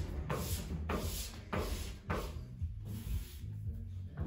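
Felt-edge squeegee pushed firmly over wet frosted window film on glass, a series of short rubbing swipes, a few each second, pressing out the water and slip solution so the film holds in place. Low background music runs underneath.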